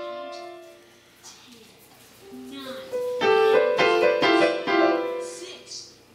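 A small child pressing keys on a digital keyboard set to a piano voice. A few notes fade out at the start, there is a near-quiet pause, then clusters of notes are struck together from about two seconds in and fade again near the end.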